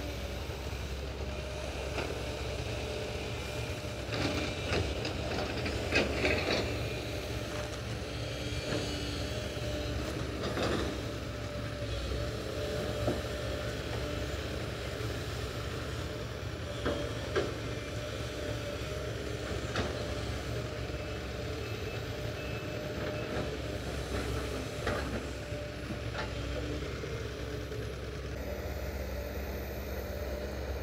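Hydraulic excavator's diesel engine running steadily at work, with scattered short knocks while it digs; the loudest comes about six seconds in.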